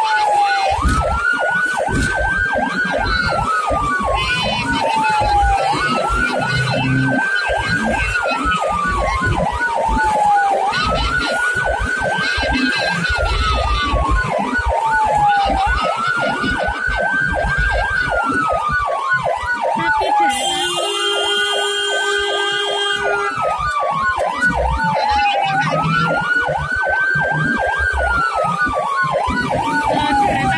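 Ambulance siren wailing in a repeating cycle, a quick rise then a slow fall about every five seconds, heard from inside the moving ambulance with engine rumble beneath. A horn sounds for about three seconds about two-thirds of the way through.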